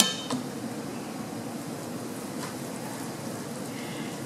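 Silicone spatula stirring chopped onion and spices in a stainless steel frying pan, with a couple of light clinks against the pan near the start over a steady low hiss of cooking.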